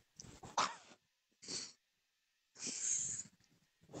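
A girl's stifled, breathy giggles close to a computer microphone: three short puffs of breath, the last and longest a little under a second in.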